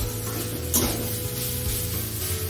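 Metal spatula stirring and scraping food around a steel kadai over a gas flame, with frying sizzle underneath. The loudest scrape comes about three-quarters of a second in.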